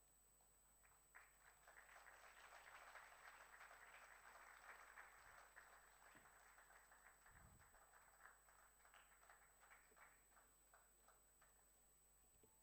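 Faint audience applause: dense patter of hand claps that rises about a second in, then thins out and dies away near the end.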